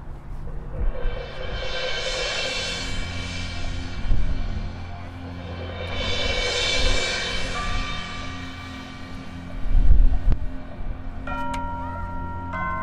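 High school marching band playing the opening of its show: two long sustained chords that each swell and fade, with low drum hits about four and ten seconds in. Near the end, ringing bell-like mallet tones from the front ensemble come in.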